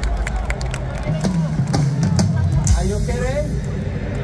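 Scattered, irregular hits on a live drum kit, including kick drum, over a steady low rumble and crowd voices, with no settled beat.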